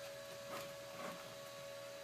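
Faint steady hum in a quiet room, with two faint soft sounds about half a second and a second in.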